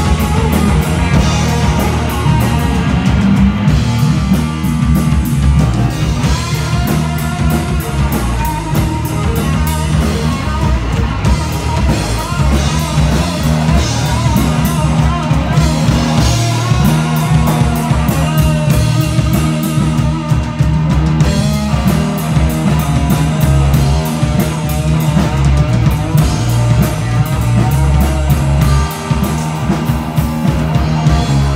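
Live heavy rock band playing loudly: an electric guitar on a white SG-style guitar with a full drum kit.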